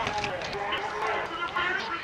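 People's voices talking, not made out as words.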